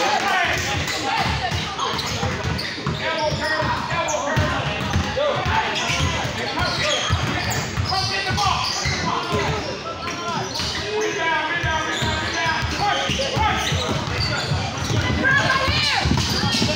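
A basketball bouncing on an indoor court floor during game play, a busy run of thuds, with players' and spectators' voices throughout in a large gym hall.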